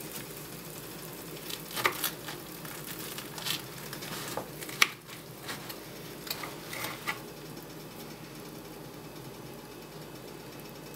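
A small sharp knife slicing open fried arepas on a kitchen countertop: a run of light clicks and knocks from about one and a half to seven seconds in, with one sharp knock near the middle. A steady sizzle of hot oil runs underneath.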